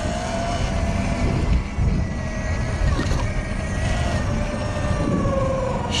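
Sur Ron electric dirt bike's motor whining while riding, a thin steady whine whose pitch sinks slowly as the bike eases off, over wind rumble on the helmet-mounted microphone.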